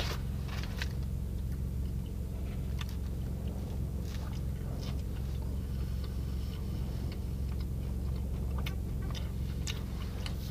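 A person chewing a bite of a soft, soggy mozzarella pizza cruncher (a breaded pizza-roll snack), with small mouth clicks scattered through. Under it is a steady low hum in the car cabin.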